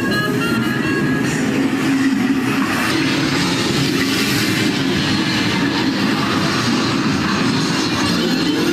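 Dark-ride soundtrack: music under a loud rushing, rumbling sound effect that takes over about a second in and is strongest in the middle.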